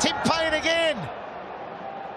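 Cricket fielders yelling an appeal to the umpire: loud, drawn-out shouts that rise and fall in pitch during the first second, then die away to a low background.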